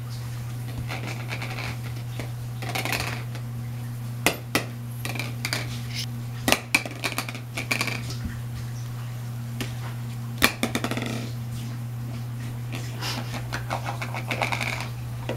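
A hard plastic ring toy knocking and clattering on a wooden floor as a crawling baby bangs and pushes it about, with hands slapping the boards. There are scattered sharp knocks, the loudest about four, six and a half, and ten and a half seconds in, over a steady low hum.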